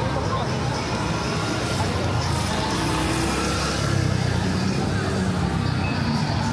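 A motor scooter's small engine running as it rides past on a wet street, loudest about four seconds in, over a steady hiss of rain and wet pavement.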